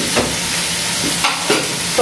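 Beef steak sizzling steadily as it fries in a pan, with a few short knocks of a knife slicing onion rings on a cutting board.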